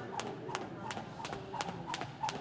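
Boxer skipping rope in boxing shoes: sharp, even ticks of the rope and feet striking the gym floor, about three a second.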